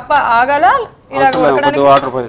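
Speech: a person talking, with a short pause about halfway through.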